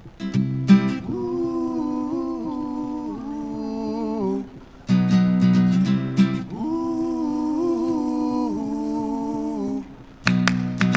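Acoustic guitar and harmonica playing a song intro: strummed guitar chords, then long held, slightly wavering harmonica notes over them. The phrase comes twice, each opening with a strummed chord, with a short break about halfway through.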